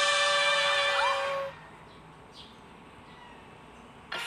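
A woman's voice holds the long final sung note of the song, steady in pitch, and stops about a second and a half in. After it there is only faint hiss.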